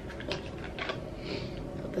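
A small cardboard box of gel polish bottles being opened by hand: a few light clicks and a brief soft rustle as the bottles are taken out.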